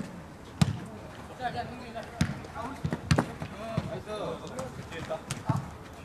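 Futsal ball kicked and bouncing in play: several sharp thuds, the loudest about half a second in, with players calling out to each other between them.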